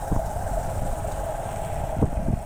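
Motorbike running along a bumpy dirt lane: a steady engine drone with wind rumbling on the microphone.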